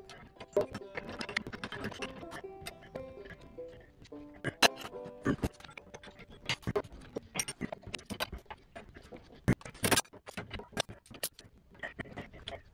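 Metal hand tools, among them a pair of vise grips, clinking and knocking irregularly as they are handled and worked on. Some strikes leave short ringing tones, with a sharper knock about four and a half seconds in and a cluster of knocks near ten seconds.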